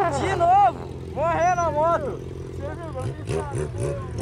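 Motorcycle engine idling steadily, with loud high-pitched voices over it. About three seconds in, the steady idle gives way to an uneven, wavering engine note.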